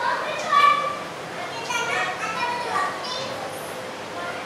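Several high-pitched voices talking over one another at once, a loose murmur of audience members reacting rather than one speaker.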